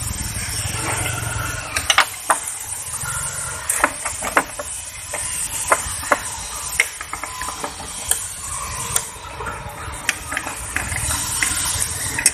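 Socket wrench on a long extension bar working on the engine mount bolts of a Volkswagen Polo: scattered, irregular metallic clicks and clinks, a few in quick little clusters.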